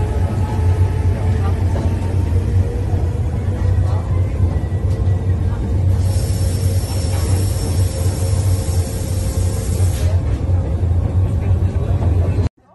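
Monte Generoso electric rack-railway railcar running, a steady low rumble under indistinct voices, with a thin high whine for a few seconds in the middle.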